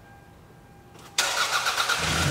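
A Toyota car being started: after a quiet first second, the starter motor suddenly begins cranking the engine.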